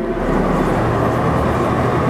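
A steady low hum with a hiss of background noise.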